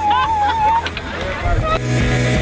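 Women whooping and cheering excitedly: one long, high, held 'woo' that wavers and breaks off about a second in, followed by a few shorter shouts. Music starts near the end.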